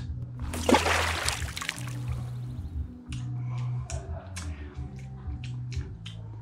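A sip of beer drawn from a glass with a slurp, followed by a run of small mouth clicks as it is tasted. Soft background music with a steady bass line plays underneath.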